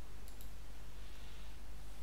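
Two quick computer mouse clicks, about a tenth of a second apart, over a steady low hum.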